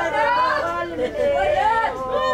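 Several women wailing and lamenting in mourning, their voices overlapping in long, wavering held notes.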